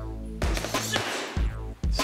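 A boxer's gloved punches landing on a heavy bag in a quick series of sharp thuds, several hits within two seconds, over background music.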